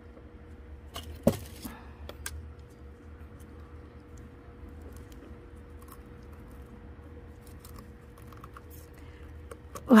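Gloved hands handling a potted echeveria succulent and a plastic skewer: a sharp click a little over a second in, then a few faint ticks over a low steady hum.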